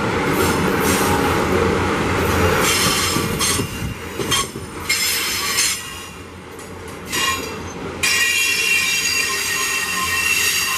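Loaded iron-ore gondola wagons rolling past close by, their steel wheels rumbling on the rails and squealing high-pitched on and off. The squeal turns steady and loudest over the last two seconds.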